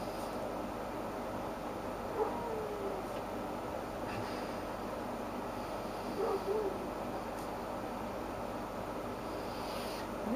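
Steady low background hum and hiss. It is broken by a faint brief falling tone about two seconds in and a short wavering one around six seconds.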